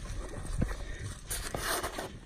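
Footsteps swishing through grass with soft thumps, and a louder rustle in the second half.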